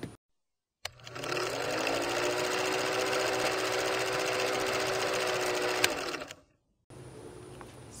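Film projector sound effect: a fast, even mechanical clatter with a steady hum that rises slightly in pitch as it starts about a second in. It stops about six seconds in, just after a sharp click.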